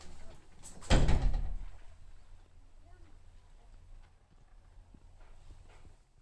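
A car door shutting with one heavy thump about a second in, followed by a low steady hum and faint handling noises.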